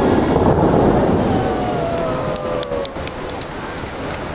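Musical fountain water jets rushing and the tall sprays falling back into the lake, a loud wash that fades gradually over the few seconds. A faint tone slides slowly down in pitch through the middle.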